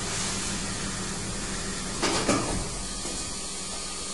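Machinery in a plastics factory running with a steady hum and hiss, with a short, sharp burst of hissing about two seconds in.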